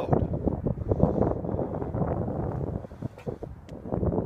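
Wind buffeting the microphone: an uneven, gusty low rumble that eases off for a moment about three seconds in.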